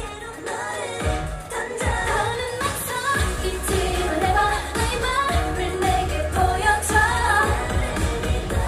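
K-pop girl-group song with female vocals, heard through the concert's sound system. The bass line comes in about three seconds in under the singing.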